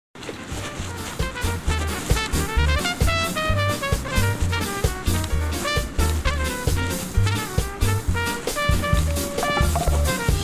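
Background music in an upbeat swing style, with a steady bouncing bass line, drum hits and a melody line.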